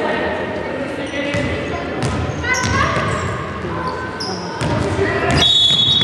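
Basketball being dribbled and bounced on a hardwood gym floor, with players' shoes squeaking and voices echoing in a large hall. A high steady tone begins about five and a half seconds in.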